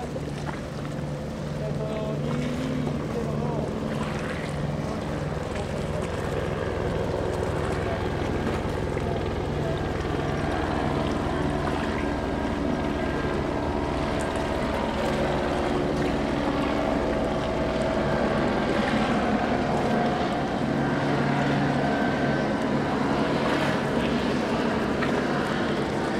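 Outboard motors of small boats running steadily, a continuous engine hum with wind and water noise underneath.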